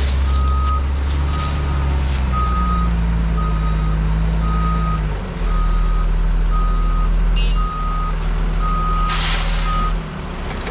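Dump truck backing up, its reverse alarm beeping steadily about once every 0.8 seconds over the running engine, whose note shifts twice partway through. Near the end comes a short burst of hiss.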